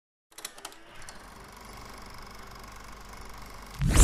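Logo sting sound effect: a few glitchy clicks, then a steady static hiss that slowly swells, ending in a loud sudden hit near the end.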